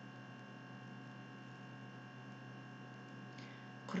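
Faint, steady electrical hum with a buzzing edge: background room tone of the recording during a pause in speech.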